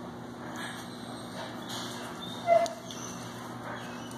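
A puppy gives one short, sharp yip about two and a half seconds in, over a steady low hum.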